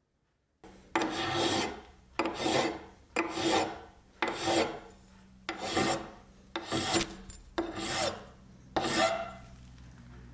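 A metal file stroked across the end of a 3/4-inch brass rod held in a vise, shaping a flat on the rod's end. Eight slow rasping strokes about a second apart, starting abruptly about a second in.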